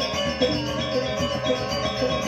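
Balinese gamelan gong ensemble playing: many bronze metallophones and gongs ringing together in a dense texture, with a regular beat of accents about every half second.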